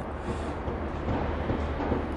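Steady low rumble of distant city traffic.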